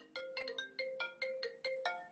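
A phone ringtone playing over an open line on a video call: a quick melody of bright pitched notes, about five or six a second.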